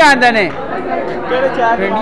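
Speech only: a voice talking close by over the chatter of other voices.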